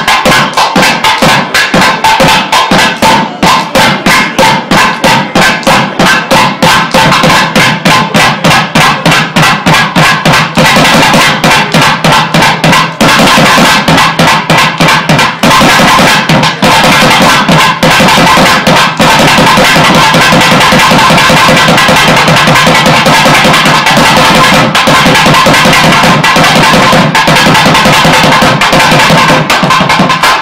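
Several thavil barrel drums played together with curved sticks and bare hands, a fast, steady rhythm of sharp strokes. From about halfway on the drumming thickens into dense, almost continuous rolling.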